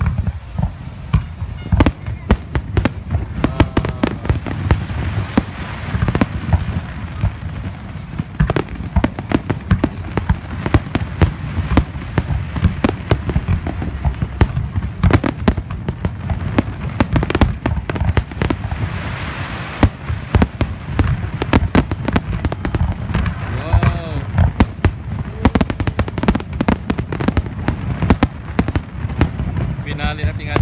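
Aerial fireworks shells bursting in rapid succession: many sharp bangs and crackles all through, over a steady low rumble.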